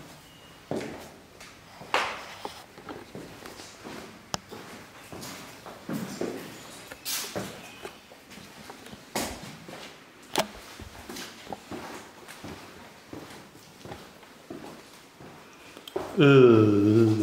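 Footsteps going down a concrete staircase and then across a concrete floor, slow and uneven, with a separate scuff or knock roughly every second or two.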